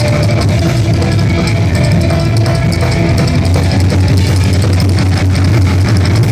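A live psychobilly band playing loud, fast rock, with a coffin-shaped upright bass carrying a heavy low end under drums and electric guitar.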